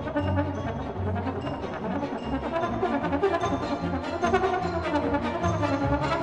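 Solo trombone playing a concerto line with a string orchestra accompanying. Low notes repeat in the bass during the first half.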